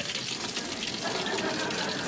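Shower running: a steady hiss of spraying water.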